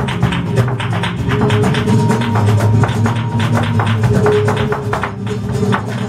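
Live flamenco music: guitar with a dense run of sharp percussive strikes, several a second, from a flamenco dancer's footwork.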